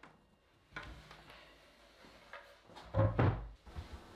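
Handling knocks: a light knock under a second in, then a louder, dull thud about three seconds in.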